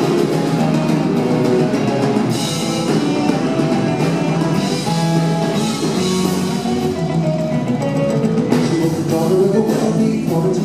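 A rock band playing live: electric guitars, keyboards and a drum kit, recorded from the audience in the hall.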